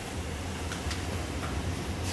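Steady low hum and hiss of a running HVAC air handler, with a few faint ticks.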